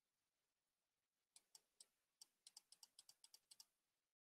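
Faint computer keyboard typing: a quick run of about fifteen key clicks starting a little over a second in, over near silence.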